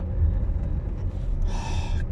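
Steady low rumble of a car's engine and tyres heard inside the cabin while driving at low revs, with a sharp intake of breath near the end.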